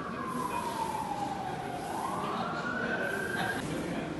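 A wailing emergency-vehicle siren: one slow sweep that falls in pitch for about two seconds, then rises again and cuts off suddenly shortly before the end.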